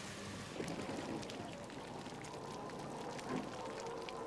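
Quiet cowshed ambience: a faint steady hum with scattered light clicks and knocks.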